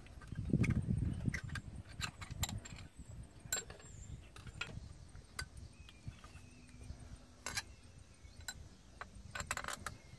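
Irregular metal clicks and clinks of bolts and tools being handled against a tractor's rear hydraulic remote valve stack while its bolts are swapped for longer studs. A brief low rumble comes about half a second in, and a quick cluster of clicks near the end.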